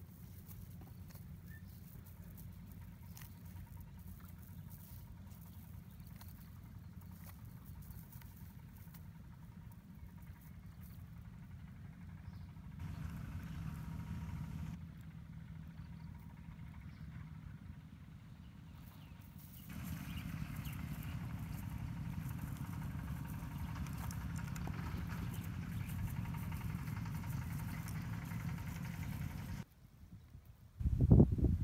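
Light rustling and many small clicks from a nylon cast net with lead sinkers being handled and gathered, over a steady low rumble that grows louder for a couple of seconds about a third of the way in and again for most of the second half.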